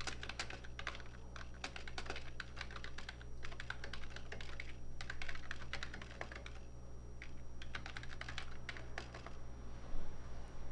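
Typing on a computer keyboard: irregular runs of keystrokes with a few short pauses, over a low steady hum.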